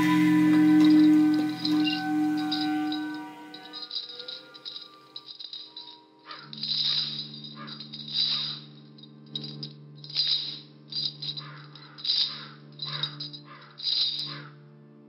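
Film score: held droning tones for the first few seconds, then a low sustained chord under irregular bursts of high, rattling buzz.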